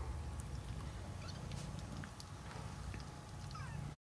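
Three-week-old kittens mewing: a few short, high-pitched mews, the last one falling in pitch near the end, among light clicks.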